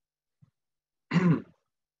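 Near silence, then a man clears his throat once, a little over a second in.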